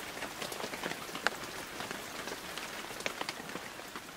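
Rain falling on a surface: a steady hiss with irregular drop ticks, one sharper drop about a second in.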